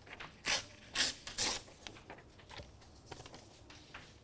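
Chalk writing on a chalkboard: three short scratchy strokes in the first second and a half, followed by fainter taps and scrapes.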